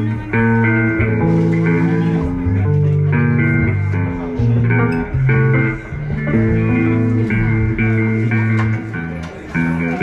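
Electric guitar and bass guitar played loud through a PA between songs: held notes and chords that shift every second or so, loose noodling during tuning time rather than a song.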